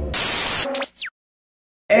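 A burst of TV-style static lasting about half a second, used as an edit transition, cuts into two quick falling zaps, then silence. A man's voice starts right at the end.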